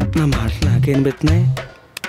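Background score with percussion strikes under a man's low, drawn-out voice.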